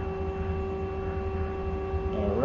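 Steady machine hum from a powered-on lathe at rest: one held tone with fainter higher tones and a low rumble beneath.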